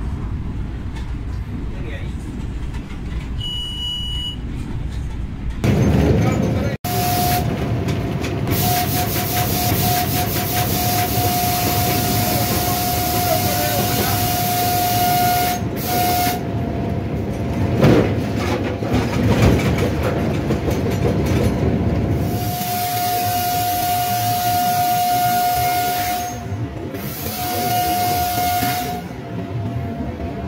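Train running on the track with its locomotive horn sounded in long, steady blasts over the rumble. The horn holds one tone for several seconds, stops briefly, and sounds again in two more long blasts near the end, as a donkey cart stands on the line ahead.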